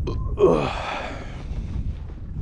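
A man's breathy sigh, his voice falling in pitch about half a second in and trailing off into an exhale. Wind buffets the microphone underneath.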